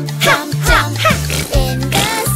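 Children's song: a sung vocal over a bouncy bass line and backing music.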